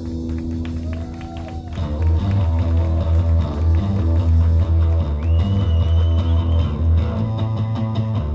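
A rock band playing live, with electric guitar and bass. A held chord gives way, about two seconds in, to the full band playing louder over a heavy bass line, with a high held note sounding for over a second about five seconds in.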